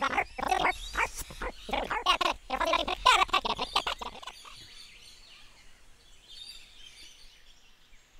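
A character voice making short pitched vocal sounds for about four seconds, then fading to faint background ambience with a light high hiss.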